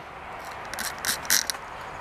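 A few short, quick clicks and rustles of something being handled, bunched between about half a second and a second and a half in.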